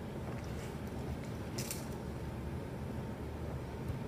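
Light cotton fabric rustling faintly as it is folded and handled by hand, with one brief, slightly louder rustle about one and a half seconds in, over a steady low room hum.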